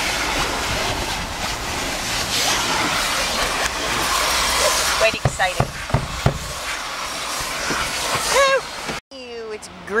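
Vacuum cleaner running steadily, its hose and crevice nozzle sucking along car seats and the floor, with a few knocks of the nozzle against the interior about five to six seconds in. The sound cuts off suddenly about nine seconds in.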